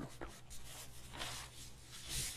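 A few faint rustles of paper as the pages of a large book are handled and turned.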